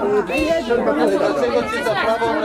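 Indistinct chatter: several voices talking at once, among them children's, with no clear words.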